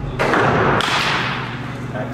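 A baseball bat strikes a pitched ball in an indoor batting cage: one sudden loud hit about a fifth of a second in that rings on and fades in the large hall.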